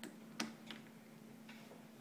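A few faint, sharp clicks, the clearest a little under half a second in, over a low steady hum.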